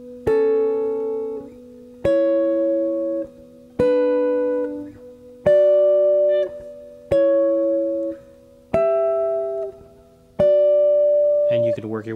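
Clean electric guitar playing two-note sixths, seven of them about one every 1.7 seconds, each rung out and then cut short. The pairs step up a third, then down one, climbing the D major scale.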